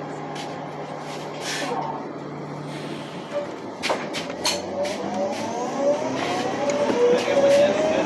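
A motor vehicle approaching: a whine that glides up and down in pitch and grows louder over the last few seconds. A steady low hum underlies the first few seconds, and there is one sharp click near the middle.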